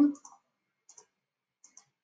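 A few faint computer mouse clicks, two small pairs about three quarters of a second apart, placing points for lines in a drawing program; otherwise near silence.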